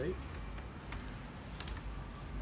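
A few light clicks of small plastic pieces being handled, the clearest near the end: tiny doll accessories being picked out of the plastic compartments of a toy shell.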